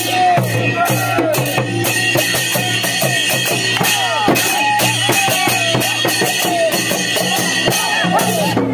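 Dhol, a two-headed barrel drum, beaten fast and continuously with small hand cymbals clashing in time, for a festival dance. Voices call out over the drumming.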